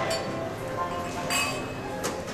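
Glassware clinking, two sharp chinks about a second apart, over the murmur of voices.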